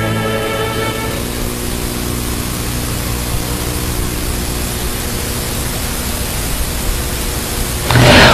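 Bowed-string music fading out in the first second, then a steady, fairly loud hiss with a faint low hum underneath.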